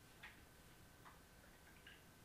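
Near silence: room tone with a faint steady high hum and three faint computer-mouse clicks, spaced about a second apart.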